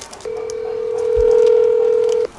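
Ringback tone of an outgoing phone call playing from a smartphone: one steady tone that starts about a quarter second in and lasts about two seconds while the call rings out unanswered.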